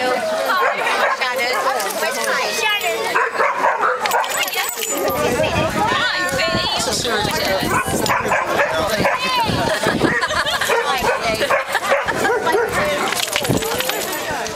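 Hungarian vizslas whining and yipping, with a few barks, over people talking.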